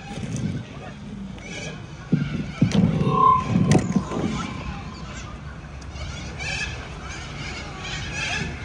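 Outdoor street ambience of indistinct voices from passers-by. Between about two and four seconds in there are several knocks and clicks from a hand-held phone being moved, with a brief high tone about three seconds in.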